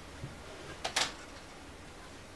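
Faint handling noise as an LCD panel is lifted off a cloth work mat, with two short knocks close together about a second in.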